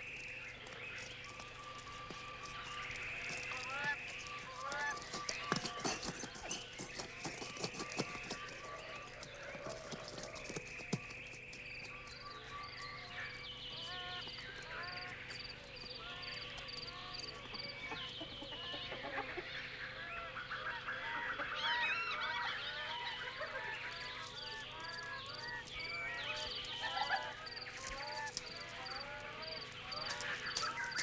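Forest ambience of many birds calling over one another: short repeated chirps and whistles, with a run of high pips at about two a second in the middle and again near the end.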